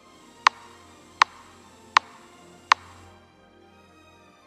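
Four sharp, evenly spaced clicks, about three-quarters of a second apart, like a metronome count-in for the next rhythm, over faint background music.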